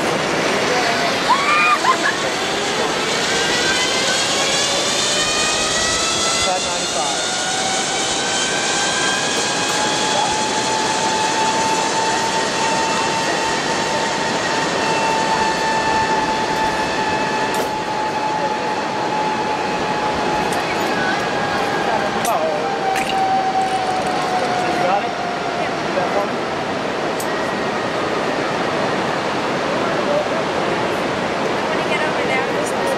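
Zipline trolley running down a steel cable: a whine that climbs in pitch over the first dozen seconds as the rider picks up speed, holds, then drops and fades as the trolley slows near the end. A steady rushing noise underneath.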